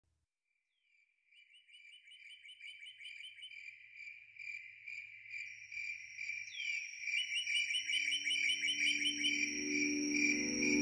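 Crickets chirping in a rapid high trill, fading in gradually. About seven and a half seconds in, low sustained musical notes enter beneath them and swell as the song begins.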